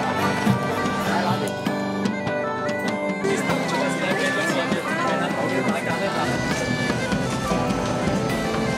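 Bagpipe music: a stepping melody played over a steady drone.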